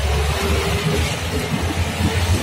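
A jeep's engine and body running with a steady low rumble while driving along a rough dirt track, heard from inside the vehicle.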